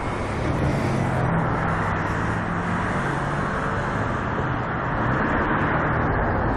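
Steady city street traffic noise, with a low engine hum in the first half.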